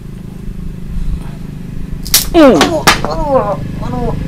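Sharp cracks of a wooden stick striking a person, the first about two seconds in and a second just before three seconds. Each is answered by a man crying out in pain, his voice falling in pitch, over a steady low hum.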